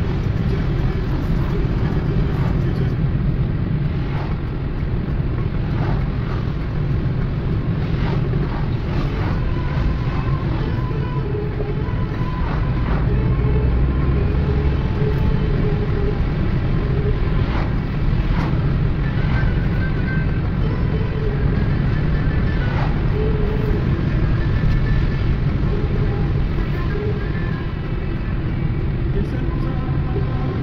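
Steady low rumble of road and engine noise heard inside a moving car's cabin.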